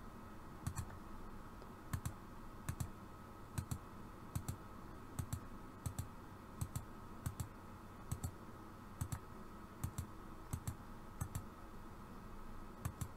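Computer mouse button clicking, each click a quick press-and-release pair, repeated irregularly about once a second as nodes are placed one by one with a vector pen tool.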